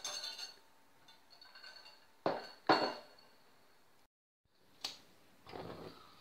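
A stainless steel wire whisk clinking against a glass mixing bowl: a few sharp clinks, the loudest pair close together about halfway through. After a brief dropout there is one more short click near the end.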